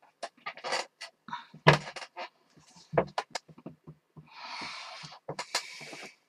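Irregular small clicks and knocks of parts being handled on a workbench, the loudest a knock a little under two seconds in. About four seconds in there is a soft hiss lasting about a second, and a shorter one follows near the end.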